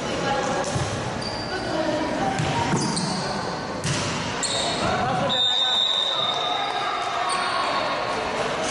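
Indoor volleyball rally: the ball is struck several times with sharp slaps that echo in the gym, with players calling out. About five seconds in, a steady high whistle lasting about a second ends the rally, a referee's whistle.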